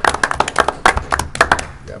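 A small group of people applauding, uneven individual claps that die away about one and a half seconds in.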